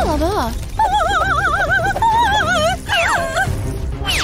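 Cartoon background music with a steady low beat. Over it, a character's voice gives a wavering, warbling cry with a fast wobble in pitch, starting about a second in and lasting about two seconds, with shorter gliding vocal sounds before and after it.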